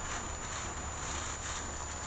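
Thin plastic bag rustling and crinkling as it is handled and held open, in a string of irregular soft rustles.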